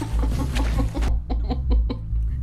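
A person laughing in a quick run of short, breathy pulses that thin out after about a second.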